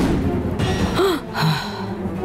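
Dramatic TV-serial background score with a short breathy gasp about a second in, one of a series of gasps spaced roughly two seconds apart.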